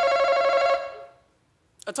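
Game-show face-off buzzer ringing: a steady, rapidly trembling electric bell tone that sounds for about a second and then fades away. A contestant starts to speak at the very end.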